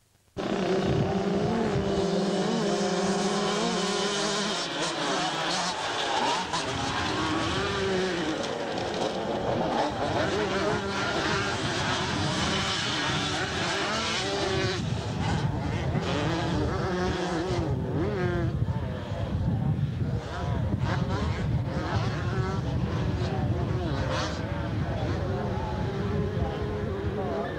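A pack of 125cc two-stroke motocross bikes racing, many engines revving together with pitches rising and falling. The sound cuts in after a split-second dropout at the very beginning.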